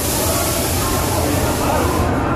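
Busy indoor hall ambience with background voices, under a steady hiss that starts and stops abruptly.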